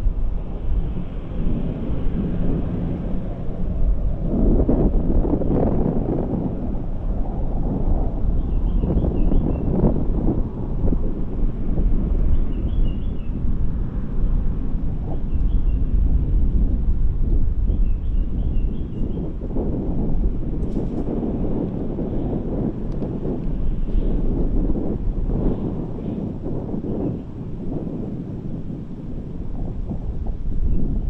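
Wind buffeting an outdoor live camera's microphone, a rumbling low rush that swells and eases in gusts. A few faint, short high chirps come through now and then.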